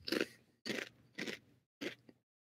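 Four short crunching noises, about half a second apart, each cutting off into silence.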